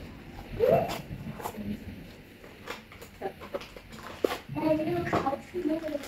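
A small cardboard box being opened and plastic packaging handled: a string of short crinkles and clicks. Brief faint voice sounds come in just before a second in and again a little after four seconds.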